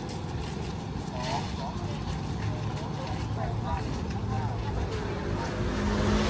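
Street ambience: the low hum of road traffic, growing louder near the end, with faint voices of people talking nearby.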